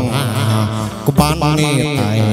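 Chầu văn ritual music: a sung, chant-like vocal line with instrumental accompaniment and a sharp percussion stroke a little over a second in.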